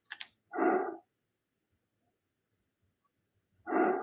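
A single mouse click, then two short barks about three seconds apart, one early and one near the end.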